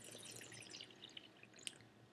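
Very faint wet mouth sounds of a sip of red wine being tasted: a scatter of tiny liquid clicks, one a little stronger near the end.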